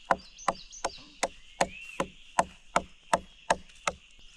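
A large knife chopping raw chicken on a wooden plank, evenly spaced blows about three a second.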